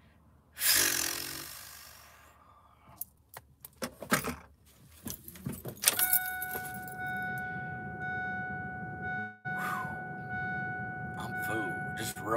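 A loud breathy exhale, then keys jangling and clicking, then a vehicle's engine starting about six seconds in and running steadily, with a steady high tone sounding over it.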